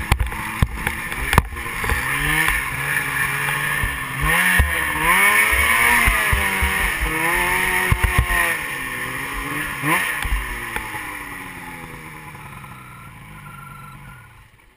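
Ski-Doo Rev snowmobile with an 800 two-stroke engine revving up and down, with a few sharp thumps from the sled over the snow. The engine then eases off, its sound fading over the last few seconds.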